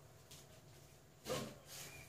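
Quiet rubbing of a steel ruler being slid into position on a sheet of drawing paper.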